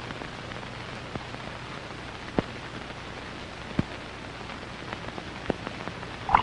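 Steady hiss of an old film print's soundtrack with scattered clicks and pops, the loudest about two and a half and about four seconds in.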